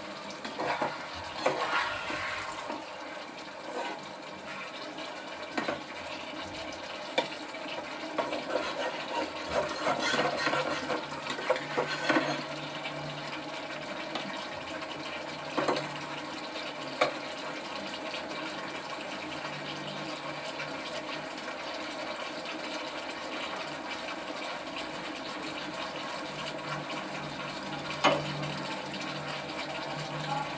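A spatula stirring and scraping a fish curry in a kadai, with a few sharp knocks of the spatula against the pan, the loudest near the end. Under it runs a steady watery hiss of the curry simmering on the stove.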